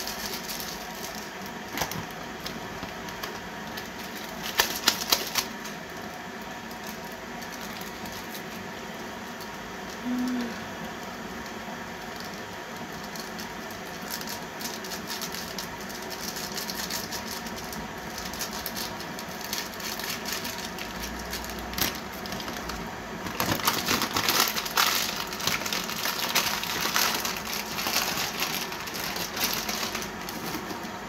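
Light clicking and rattling of small items being handled at a table, with a short cluster of clicks about five seconds in and a denser run of clicking and rustling near the end.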